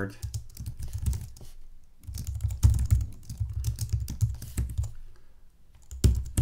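Typing on a computer keyboard: rapid keystroke clicks in two runs, with a short pause about a second and a half in and a tail-off near the end.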